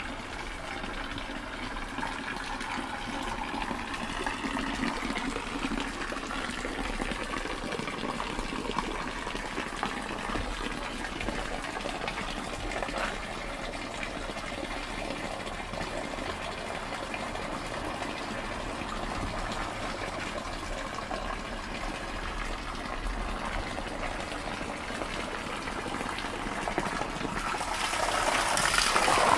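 Water pouring from a stone fountain's spout and splashing into its basin, a steady rush that grows louder near the end.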